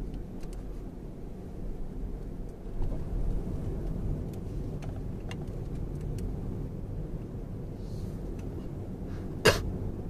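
Steady low rumble of road and drivetrain noise inside the cabin of a Lexus RX-450h driving slowly, with a few faint clicks. Near the end, one sudden sharp throat noise from a person in the car.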